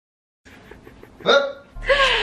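A cut to dead silence, then faint voices, a short rising vocal yelp a little over a second in, and a woman breaking into laughter near the end.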